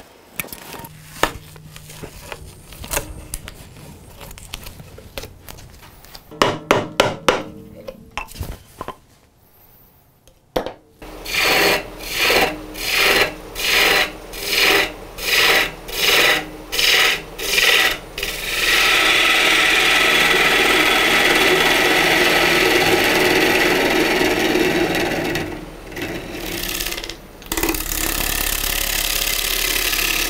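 Turning tool cutting basswood spinning on a lathe, with the lathe motor's low hum underneath. First it cuts in regular pulses, about three every two seconds, then it settles into a steady continuous cut with a brief break near the end. Before the lathe starts there are light handling knocks and a short near-quiet pause.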